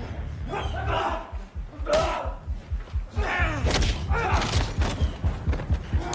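Staged film fight: heavy body impacts and thuds as a man is thrown to the ground, with several strained vocal cries over a low pulsing rumble.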